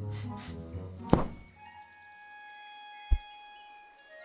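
Cartoon soundtrack: gentle music with held notes, broken by a sharp thump about a second in and a short, deep thud near three seconds, the sound effects of the heavy rabbit hauling himself out of his burrow.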